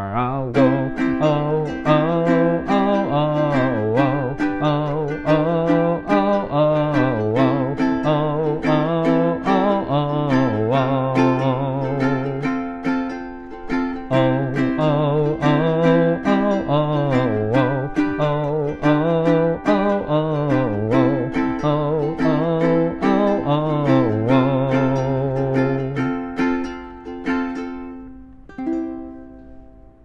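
L. Luthier ukulele strummed in a steady rhythm while a man sings a wordless 'oh oh oh' line over it. About four seconds before the end the singing stops and the last strummed chords ring out and fade.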